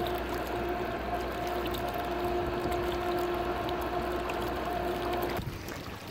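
Steady low hum of the moored tugboat's diesel machinery running, over the wash of water, cutting off about five seconds in.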